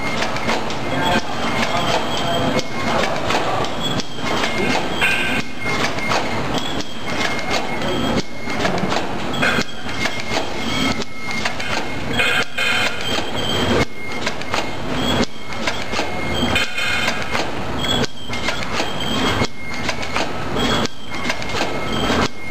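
Filter-paper tea bag packing machine running, a steady mechanical clatter of clicks and knocks that repeats its cycle about every second and a half as it turns out filled bags.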